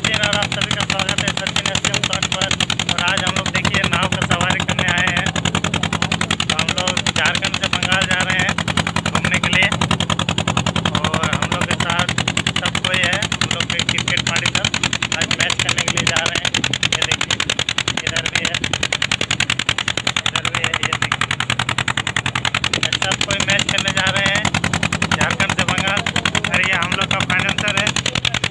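Boat engine running steadily with a rapid, even chugging that goes on without a break, loud over a man's voice.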